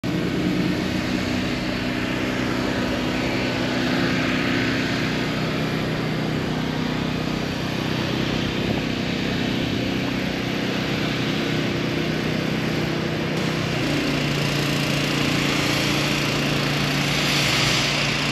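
An engine running steadily, its hum shifting slightly in pitch about fourteen seconds in.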